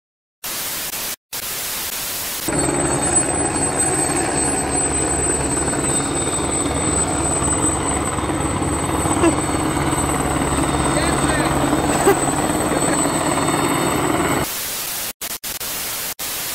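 Static hiss, then a helicopter flying overhead with its rotor chopping in a fast, even pulse. About two seconds from the end the helicopter cuts off and the static hiss returns.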